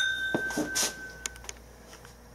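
Two drinking glasses clinked together in a toast, the glass ringing on with a clear tone that fades out over about a second and a half. A few faint clicks follow.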